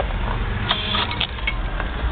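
A brief jingle of car keys and a few light clicks at the ignition, about a second in, over a steady low rumble; the engine is not yet running.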